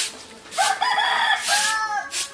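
A rooster crowing, one call of about a second and a half starting about half a second in. Under it, regular swishes of a grass broom sweeping a dirt floor, about one stroke every 0.7 seconds.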